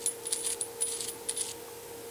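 Light metallic clicks and scrapes of a soldering iron's tip and metal retaining sleeve being fitted back onto the pencil by hand, thinning out after about a second and a half, over a faint steady hum.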